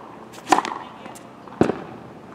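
A tennis racket striking the ball on a serve: one sharp, loud pop about half a second in, followed about a second later by a second sharp hit.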